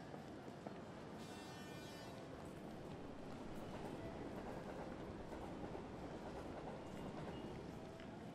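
Faint railway station ambience: a steady low rumble with a few scattered light clicks, and a brief high whine about a second in.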